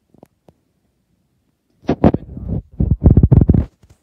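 Two faint clicks near the start, then loud low rumbling buffets in two spells from about two seconds in: air from running pedestal fans blowing across the microphone as the camera is moved near them.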